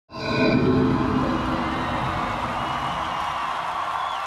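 Large concert crowd cheering and shouting, starting suddenly and loudest in the first second, then holding steady.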